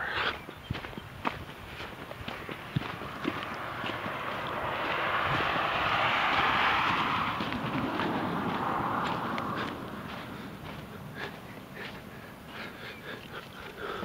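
Footsteps on a dirt and gravel path. A rushing noise swells from about four seconds in and fades away by about ten seconds: a vehicle passing on the nearby road.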